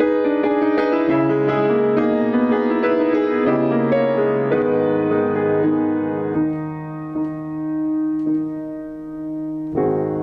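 Solo Steinway grand piano being played: quick, dense figures for the first few seconds, then slower, held notes that fade softer, and a louder chord struck near the end.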